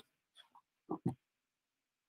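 Two quick, short grunt-like vocal sounds from a man, about a second in, with near quiet around them.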